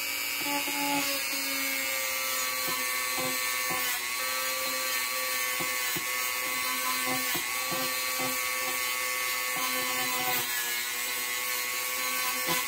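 Small rotary moto tool with a wire brush running at a steady speed, its motor giving a constant whine. Irregular light ticks come as the brush works the metal S-clip of a model locomotive motor's brush holder, polishing it.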